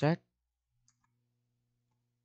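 A faint click from operating the computer about a second in, after a spoken word at the very start. Otherwise near silence with a low hum.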